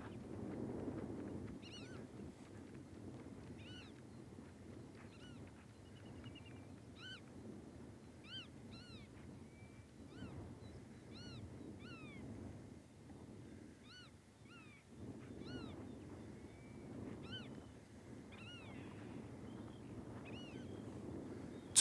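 A bird calling over and over, faint short arched chirps about one or two a second, with a brief rapid trill about six seconds in, over a low rumbling noise.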